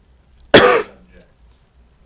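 A single loud, sharp cough from a person, about half a second in and over in a third of a second.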